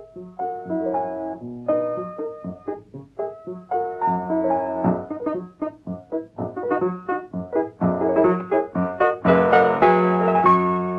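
Piano music: a quick run of separate notes that grows fuller and louder near the end.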